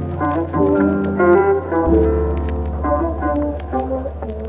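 Music: sustained organ-like chords over a deep held bass note that changes about two seconds in, with light ticking percussion.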